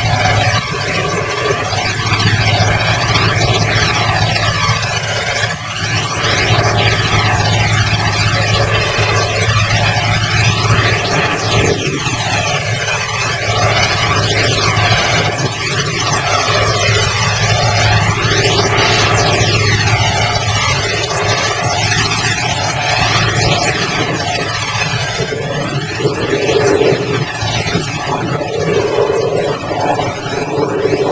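Heavy-equipment engine running steadily: a loud, continuous drone whose tone swirls slowly without ever stopping.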